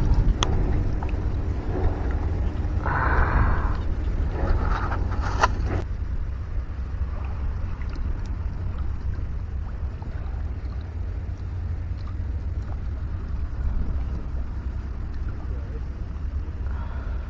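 Wind buffeting the microphone outdoors, a steady low rumble, with a brief rustle about three seconds in and a few light clicks in the first six seconds.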